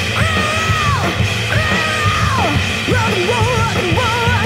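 Loud live rock music: a dense, steady bass-and-drum backing with a wavering lead vocal that holds two long notes, each falling away at its end.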